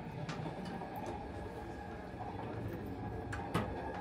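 Steady low rumble of a Class 387 electric train running, heard from inside, with a sharp click about a third of a second in and a couple more near the end from the toilet door's handle and lock.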